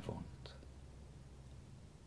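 Quiet pause in a man's spoken recitation: a steady faint low hum and hiss from the recording, with the tail of the last spoken word fading at the start and a faint soft sound about half a second in.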